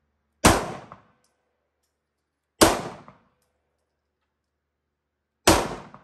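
Three shots from a Browning Hi-Power 9mm pistol, spaced about two to three seconds apart, each dying away within about half a second.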